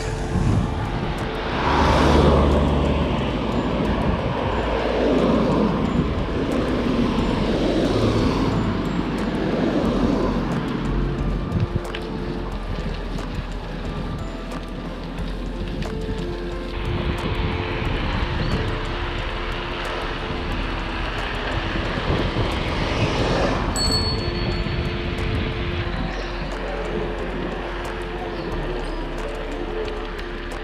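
Aircraft engine passing overhead, loudest about two seconds in, its pitch falling slowly over the following seconds as it goes by; a second swell of engine noise comes later.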